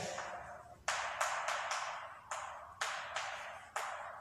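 Chalk tapping and stroking against a chalkboard while writing: a string of about eight short, sharp strokes in four seconds, each followed by a brief fading ring in the room.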